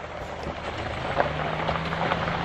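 Honda CR-V's engine running close by: a low steady hum whose pitch rises a little about half a second in, under a steady hiss.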